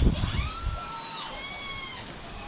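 A rooster crowing: one drawn-out call in a few pitch steps, lasting about a second and a half, starting about half a second in. A couple of soft knocks come right at the start.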